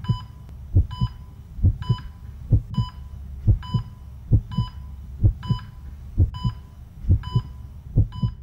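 Heartbeat sound effect: paired low thumps, lub-dub, repeating a little faster than once a second. Each beat comes with a short high beep like a heart monitor's.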